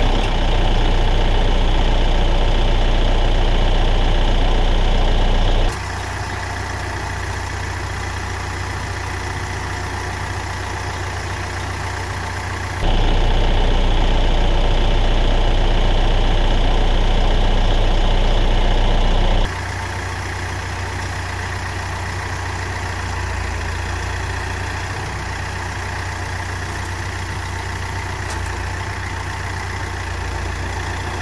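Kioti RX7320 tractor's four-cylinder diesel engine running steadily, with no speech over it. Its sound drops abruptly about six seconds in, jumps back up near thirteen seconds and drops again near nineteen seconds.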